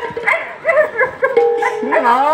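A performer's voice delivering Bhaona dialogue in short, high, sliding exclamations, with a steady held note coming in near the end.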